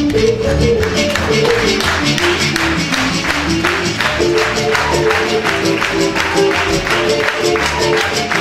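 Live acoustic band music: acoustic guitars and other instruments playing over a steady, quick beat, with a melody line stepping on top.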